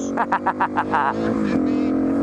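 Single-cylinder dirt bike engine running at steady revs, a drone that holds one pitch. Over it, in the first second, comes a quick run of short voiced bursts, a person laughing.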